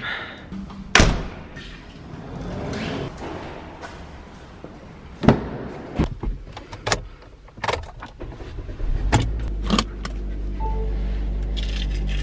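Car keys jangling and clicking as the key is worked in the ignition, then the car's engine starts about nine seconds in and idles steadily.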